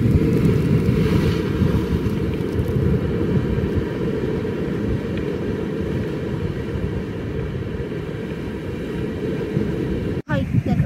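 Low, fluctuating rumble of wind buffeting the microphone outdoors, a little stronger at first and then easing slightly.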